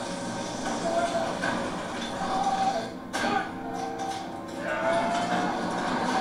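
A dragon's long, drawn-out calls from the show's soundtrack, several pitched cries that bend in pitch, over a steady rush of fire.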